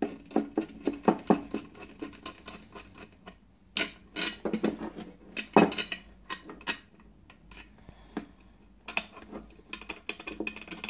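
Small steel bolts and nuts clinking, knocking and scraping against a steel bracket as they are handled and fitted by hand. Clusters of sharp clicks come with short pauses in between.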